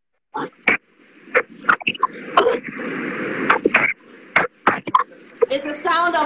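Video-call audio breaking up over a bad connection: a brief dropout to silence, then scattered crackles over a hissy, rain-like noise, with garbled speech coming back through near the end.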